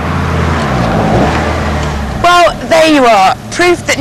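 Two turbocharged rally-bred cars racing on a track: an Audi Sport Quattro with a 2.1-litre five-cylinder and a Mitsubishi Lancer Evo 6 with a 2-litre four-cylinder, their engines running hard under load. Speech takes over about halfway through.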